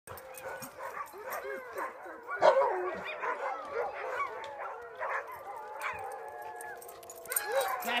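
Tamaskan dogs whining and yipping during play, a near-continuous run of high, wavering calls that rise and fall in pitch. The loudest call comes about two and a half seconds in.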